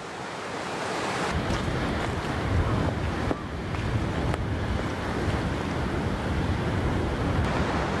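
Sea surf washing and breaking against rocks at the foot of cliffs, a steady rushing noise, with wind buffeting the microphone in a low rumble that grows heavier about a second and a half in.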